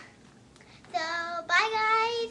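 A young girl's voice singing two held notes, the second higher and louder than the first.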